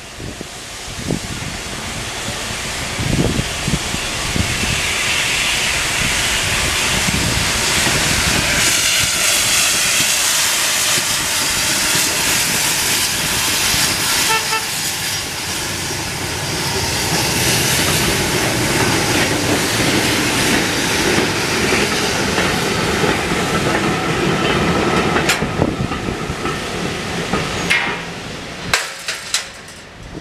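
GWR 4575 class 2-6-2T steam tank locomotive 5541 and its train of freight hopper wagons rolling across a level crossing, a steady loud rolling noise. Near the end there are sharp clicks as the last wheels cross, then the sound drops away.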